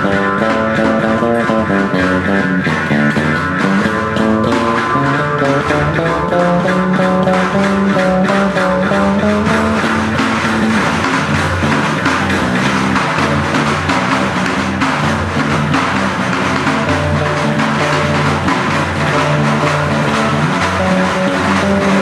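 Instrumental folk improvisation of twanging jaw harp, electric bass guitar and hammered santur, with a frame drum played over it.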